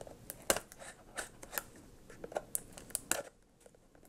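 A knife blade cutting and scraping at a small cardboard box: a series of short, sharp cuts through about the first three seconds, then quiet.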